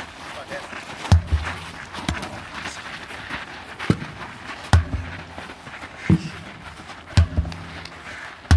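Sledgehammer blows landing on a large rubber tyre: dull, heavy thuds about one to two seconds apart, six in all.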